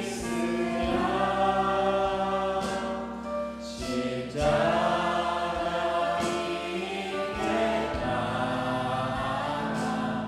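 Church praise team singing a Korean worship hymn in harmony into microphones, with instrumental backing. The singing breaks briefly about four seconds in, then comes back louder.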